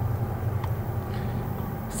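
Low steady rumble of approaching diesel locomotives.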